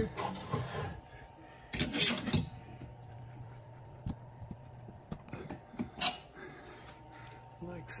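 A metal screw hook being twisted into a wooden ceiling joist, turned by a screwdriver through its eye: short scraping bursts as the thread bites into the wood, the loudest about two seconds in, then scattered clicks and light scrapes.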